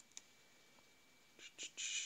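Mostly quiet room tone with one faint click just after the start, then soft breathy whispering in short bursts near the end, as a man mutters to himself while looking something up.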